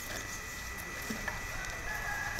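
Quiet outdoor ambience: a steady thin high tone with a few faint, short sounds scattered through it.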